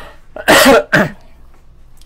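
A man coughs into his fist: two loud coughs about half a second in, the first longer, the second short.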